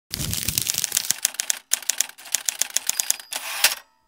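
Crumpled paper crinkling and crackling as it is unfolded flat: quick, irregular runs of small clicks, broken by a couple of short pauses, stopping just before the end.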